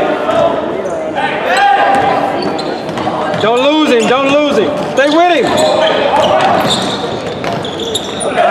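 Voices of spectators and players calling out in a gymnasium during a basketball game, with a run of loud rising-and-falling shouts about halfway through. A basketball bounces on the hardwood court underneath.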